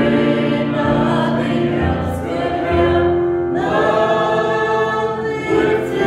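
Small church choir of men and women singing together, holding long notes.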